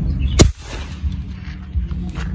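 A single shot from a Pasopati AK Mini Lipat semi-gejluk (semi-PCP) air rifle: one sharp crack about half a second in, fired across a chronograph that reads 951.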